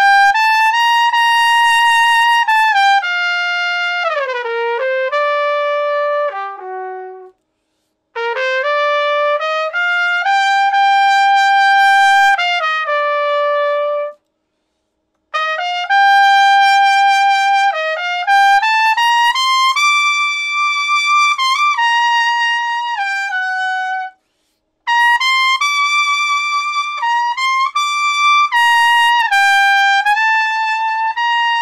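Solo trumpet playing a slow ballad melody in four long phrases of held notes, with short breaks for breath between them. This is a musical long-note exercise: the ballad is taken up through higher keys to build lead trumpet stamina.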